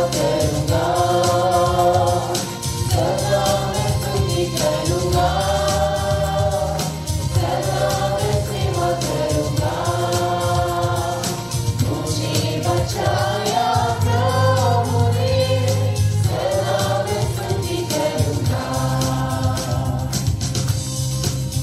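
A group of voices singing a Hindi Christian worship song in held phrases of one to two seconds, over instrumental backing with a steady bass and beat.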